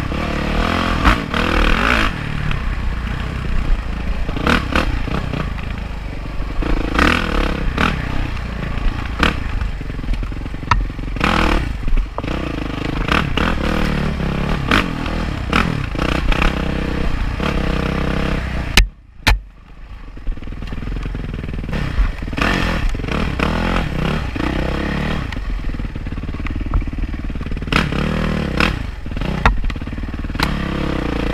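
Yamaha dirt bike engine running under changing throttle as it is ridden over a rough dirt trail, with clattering and knocks from the bike over the ground. The sound cuts out suddenly for about half a second a little past halfway, then comes back.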